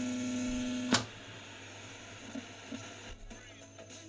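A 1961 Rohde & Schwarz ESM 300 tube VHF receiver's loudspeaker gives out a steady mains hum. The hum is cut off by a single sharp click from a front-panel switch about a second in, and after that only faint background noise remains.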